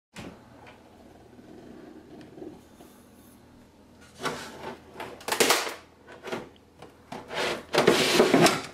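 A plastic gallon milk jug scraped and knocked as it is pulled out of a refrigerator door shelf, in a run of loud scraping rustles from about four seconds in. A faint steady hum underlies the quieter first half.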